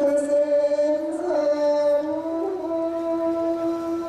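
Buddhist chanting: one voice holding long notes of a second or more, each steady in pitch, stepping up and down between a few pitches.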